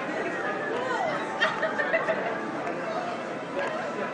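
Background chatter of several people talking at once.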